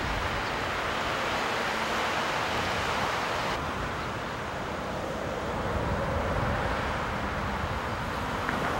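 Steady outdoor rush of wind on the microphone mixed with road traffic, turning a little duller about three and a half seconds in.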